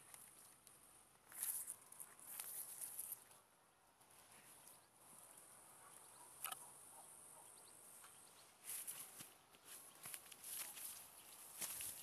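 Quiet footsteps and the rustle of dry grass and weeds brushing past, in short scattered bursts with near silence between.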